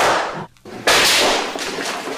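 Gunshot sound effects. One shot's ringing tail fades out early on, and a second sharp shot comes just under a second in and rings away.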